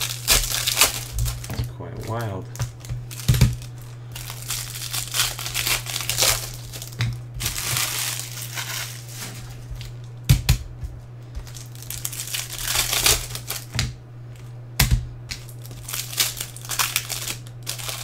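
Plastic card wrappers and sleeves crinkling as trading cards are handled, with a few sharp clicks as cards are set down on the table, over a steady low hum.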